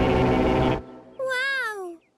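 Cartoon steam engine letting off a loud blast of steam with a low rumble, cutting off suddenly just under a second in. A short, wavering, sung-out voice sound follows.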